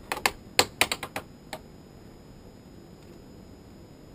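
A quick run of sharp plastic clicks and taps, about ten in the first second and a half, from a plastic basket bird trap being handled.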